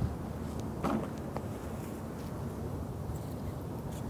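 Steady low rumble of street traffic in the open air, with a faint short sound about a second in.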